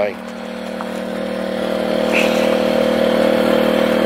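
Small portable generator running at a steady speed, a constant hum that grows gradually louder.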